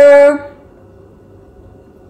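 A woman's drawn-out word trails off about half a second in, then quiet room tone with no distinct sounds.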